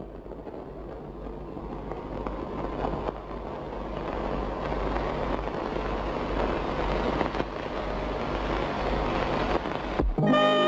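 A hissing, rushing noise on an old film soundtrack, with no clear tune or voice, swelling slowly louder over a steady low hum.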